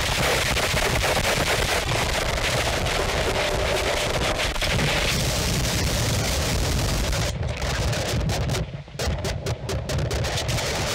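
Harsh noise from a contact microphone sealed in a rubber ball gag, handled and rubbed by hand and fed through distortion pedals: a loud, dense wall of distorted crackle. From about seven seconds in it cuts in and out in short choppy gaps.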